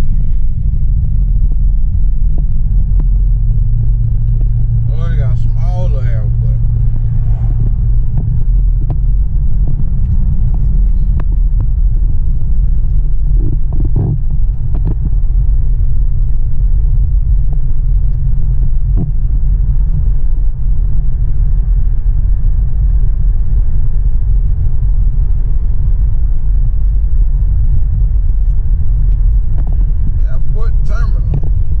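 Steady low rumble of road and engine noise inside a moving van's cabin, with a low drone in the first ten seconds. A brief voice is heard about five seconds in.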